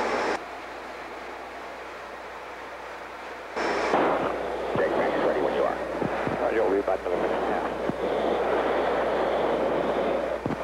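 Radio transmissions in an F-15 cockpit. A hissing transmission cuts off abruptly just after the start, leaving quieter steady background noise. About three and a half seconds in, a new transmission opens just as abruptly, with a pilot's clipped radio voice over the hiss.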